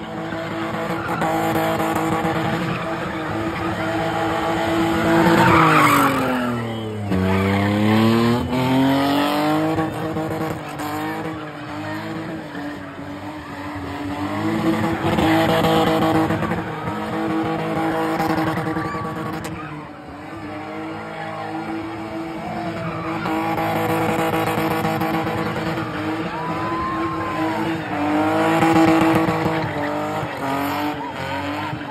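BMW E30 convertible engine held at high revs while the car spins doughnuts, with tyres squealing and skidding as they spin. About seven seconds in the revs drop sharply and climb straight back up.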